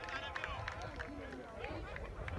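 Several people's voices overlapping, talking and calling out, faint and at a distance, over a low rumble.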